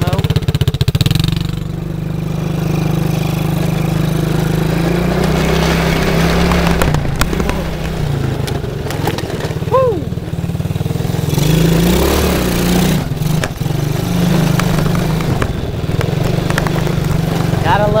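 Small single-cylinder engine of a 110cc mini ATV running while the quad is ridden over grass, its pitch rising and falling as the throttle is worked.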